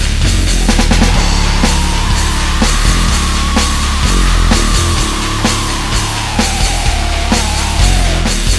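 Powerviolence band recording playing loud and fast, with distorted guitar, bass and pounding drums. A long held high note runs over the top and drifts lower near the end.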